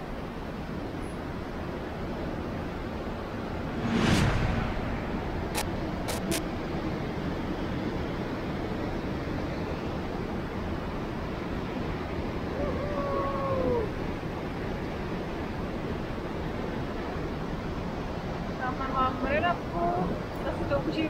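Steady rush of the Möll river's water through the rock gorge. About four seconds in there is a brief loud thump, then three sharp clicks over the next two seconds, and a short vocal sound near the middle.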